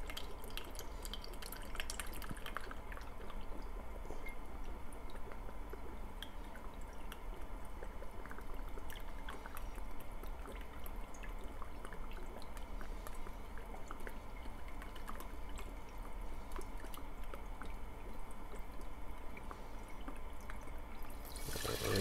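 Balsamic vinegar trickling in a thin stream from a bottle into a plastic measuring cup, with small drips and ticks. Near the end the cup is tipped and the vinegar splashes into the saucepan.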